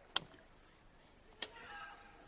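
A football being kicked twice on the pitch, two sharp knocks about a second and a quarter apart, over faint field ambience with distant players' voices.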